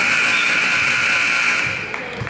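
Gym scoreboard buzzer sounding one long, steady, harsh blare that cuts off abruptly near the end.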